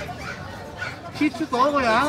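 Shih Tzu in a wire cage barking, several short pitched calls in the second half.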